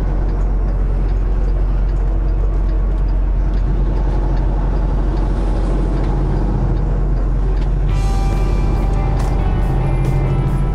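Semi truck's diesel engine running steadily as the truck drives, heard from inside the cab. About eight seconds in, background music starts over it.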